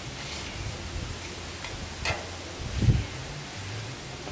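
Paper towel held in metal tongs wiping oil across a hot steel griddle top: a faint rustle over a steady low rumble of wind on the microphone. There is a light click about two seconds in and a low bump near three seconds.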